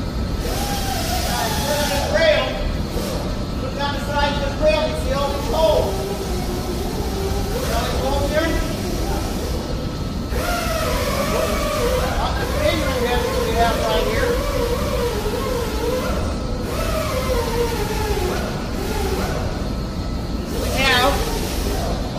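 People talking indistinctly in a workshop, over a steady low background rumble.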